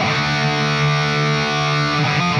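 Charvel Pro-Mod San Dimas electric guitar played through a distorted high-gain amp with an 808 Screamer overdrive engaged: a chord struck at the start and left to ring for almost two seconds before new notes come in.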